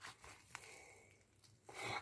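Faint crackling and a small click as a stiff slime is pulled apart by hand; it has set too firm to stretch and tears instead.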